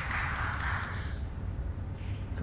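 Audience applauding, a short burst of clapping that fades out a little over a second in, over a low steady hum.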